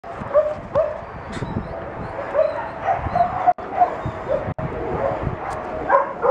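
Several dogs whining and yipping excitedly at close range, short high calls coming a couple of times a second.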